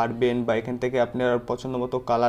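A man talking: only speech.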